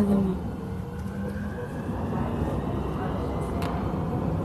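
U-Bahn train running, heard from inside the car: a steady low rumble with a faint motor whine.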